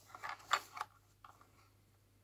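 A few light clicks and taps of hard plastic, bunched in the first second or so, as a plastic scale model car is handled and turned over in the hands.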